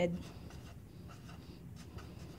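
Marker pen writing on lined paper: a run of quiet, short scratchy strokes as numbers and letters are written.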